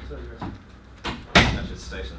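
A door slams shut once with a sharp bang about a second and a half in, after a couple of fainter clicks.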